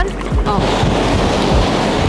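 Sea surf washing over wet sand at the water's edge, a steady hiss, with wind buffeting the microphone in low rumbles.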